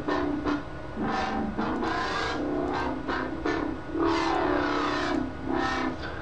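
Wobble-bass patch on the Massive software synthesizer playing held bass notes that change pitch every second or so, its filter sweeping up and down over them.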